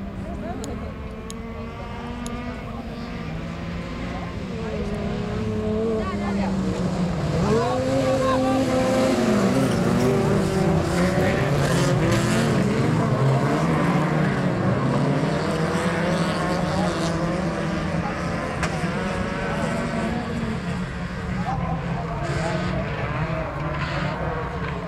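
A pack of autocross cars racing on a dirt track, several engines revving up and down together as they pass. The engines grow louder over the first several seconds, are loudest about halfway through, and then ease off.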